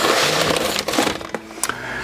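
A brown paper sack rustling and crackling as feed-wheat grain is scooped out of it into an enamel bowl, loudest in the first second.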